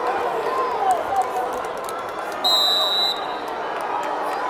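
A referee's whistle gives one short steady blast about two and a half seconds in, stopping the wrestling after the pair go out of bounds. Under it is the steady noise of the gym crowd, with a few voices calling out near the start.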